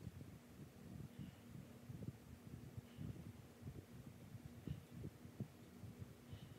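Near silence: faint room hum with soft, irregular low thumps and a few faint ticks.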